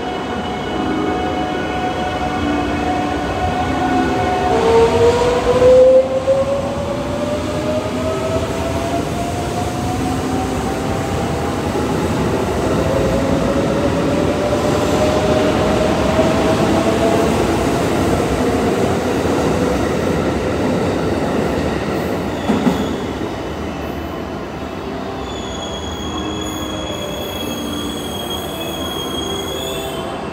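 JR West 681-series limited-express electric train departing, its GTO-VVVF inverter whining in tones that rise in pitch as it accelerates past, over the rumble of wheels on rail. There is a brief knock about two-thirds of the way through.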